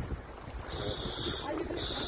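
Scuba regulator hissing in two short bursts as it is held to the mouth and tested before the dive. Wind rumbles on the microphone underneath.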